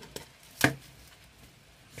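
Two short light taps or clicks from gloved hands handling a potted plant and its pot; the second, about two-thirds of a second in, is the louder.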